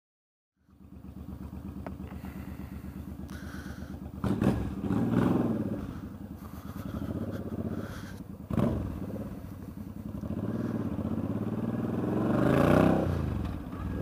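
Motorcycle engine idling steadily, then revving as the bike pulls away about four seconds in. The engine speed rises and falls through the gears, with a sharp surge in the middle and another rise near the end.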